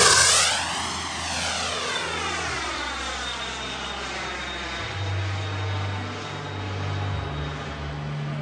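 Twin JetCat turbine engines of a 1/6-scale RC MiG-29 jet model on a low, fast pass. The sound is loudest right at the start, with a whoosh that sweeps down and back up in pitch as the jet goes by. It then settles into a steady turbine whine that slowly fades as the model climbs away.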